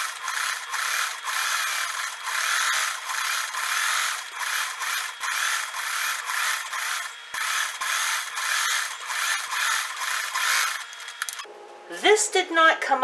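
Singer 401A sewing machine running, stitching fabric at speed in a steady pulsing rhythm; it stops abruptly near the end.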